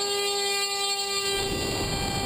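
Brushless outrunner motor (Himax 3516-1350) spinning an APC 9x6E propeller on a Skywalker RC plane, holding a steady high whine after spinning up. About a second and a half in, a rush of air noise joins the whine.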